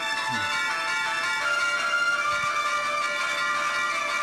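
Instrumental introduction of a Hindi film song's backing track: held melodic notes that change pitch every second or so, with no singing yet.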